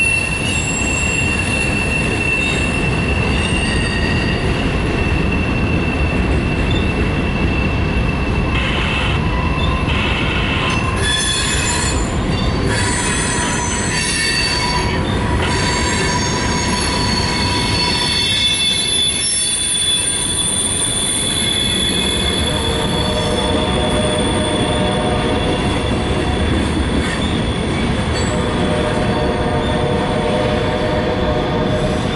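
Boxcars and hopper cars of a CSX mixed freight train rolling past close by: a steady, loud rumble of steel wheels on rail, with high-pitched squeal tones from the wheels that hold for several seconds at a time and change pitch partway through.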